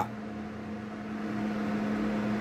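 Steady background machine hum: one low, even tone with a faint hiss, getting slightly louder toward the end.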